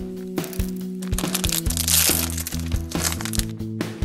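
A blind-bag wrapper crinkling and tearing open in the middle, with a few sharp crackles, over steady background music.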